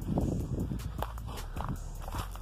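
Footsteps on dry dirt scattered with dead leaves and twigs: a run of irregular steps with a light crunch and rustle.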